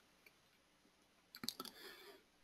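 Near silence, then a few faint clicks about one and a half seconds in: a computer mouse being clicked.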